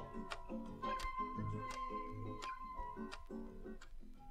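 Instrumental passage of an acoustic folk song: picked guitar notes under a held high wind-instrument note, with light percussion clicks about two to three times a second.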